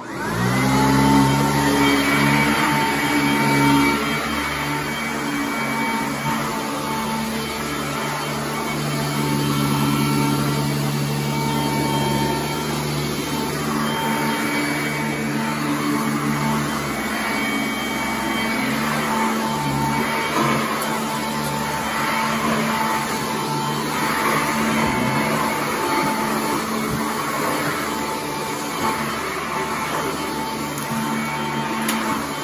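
An upright carpet vacuum switched on, its motor spinning up in the first second and then running steadily with a humming whine as it cleans carpet.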